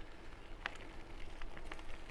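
Rolling noise of an e-bike on a path: a steady low rumble and light crackle from the tyres with wind on the microphone, and a faint click about two-thirds of a second in.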